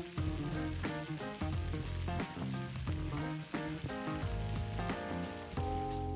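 Background music with plucked notes and a bass line changing every half second or so, over a faint steady hiss.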